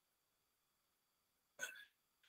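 Near silence: room tone, broken near the end by one brief vocal sound from the lecturer.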